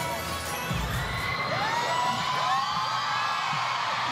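Crowd cheering and screaming, many high-pitched cries rising and falling over one another. Pop music underneath fades out about a second in.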